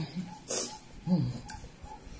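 A woman's short closed-mouth hums while chewing, falling in pitch, one about a second in, with a brief hiss about half a second in.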